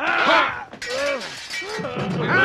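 Men yelling battle cries in a sword fight, with a sharp crash like something shattering about a second in that dies away over half a second.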